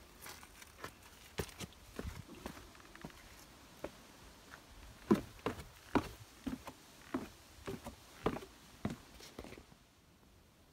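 Hiking boots stepping down a wooden trail ladder and onto rock: a run of irregular footfall knocks, louder and closer together in the second half.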